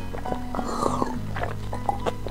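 Close-miked sipping and swallowing of jelly water from a small glass cup, a noisy gulp about half a second in, over background music with steady held notes.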